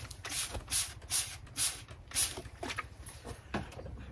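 Trigger spray bottle squirting water in about five quick hissing bursts, then a couple of fainter ones, misting the thick layer of seeds sown on kitchen roll in a microleaf tray.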